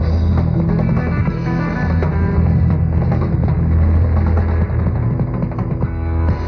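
Rock band playing live, loud and full: electric guitar, bass guitar and drums, in the closing bars of a song.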